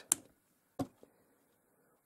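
Mostly quiet, with a couple of short, faint clicks from hands handling a toy model built of plastic plates held together by magnets and steel balls.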